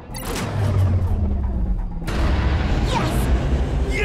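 Submarine engines starting up in a cartoon: a click, then a deep rumble that swells with a surge about two seconds in, under dramatic music.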